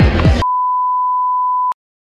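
Background music cuts off suddenly about half a second in, replaced by a steady, pure electronic beep tone that lasts just over a second and ends in a click.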